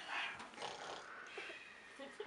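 A man's mock snore: one breathy snore lasting about a second, from someone pretending to be fast asleep.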